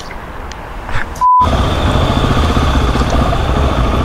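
A short beep about a second in, then a motorcycle riding through city traffic: a steady low engine rumble with wind noise on the onboard microphone.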